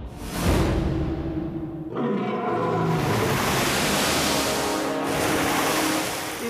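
Cartoon background music with a steady rushing noise, like a wind or surf sound effect, coming in about two seconds in and holding to the end.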